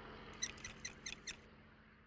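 A quick run of about six high, squeaky chirps, a cartoon-style sound effect, over a faint background that fades away.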